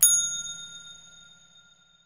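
A single bright notification-bell ding sound effect: one strike right at the start, ringing in several high tones that fade away over about a second and a half.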